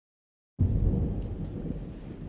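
A low rumble that starts suddenly about half a second in, loudest at first and slowly fading.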